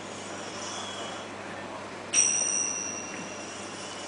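Ching, small Thai cup-shaped finger cymbals, struck once about two seconds in, giving a bright, high metallic ring that fades away over a second or so. Fainter high ringing lingers early on, over a quiet hall.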